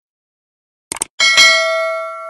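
Logo sound effect: a quick double click, then a bright bell chime that strikes and rings on, slowly fading.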